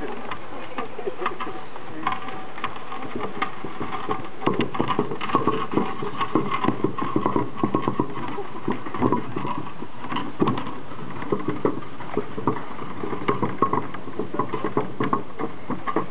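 A painted wooden oxcart rolling behind a pair of oxen. Its wheels and the oxen's hooves make an irregular clattering and knocking that grows thicker after a few seconds, over a faint steady tone for much of it.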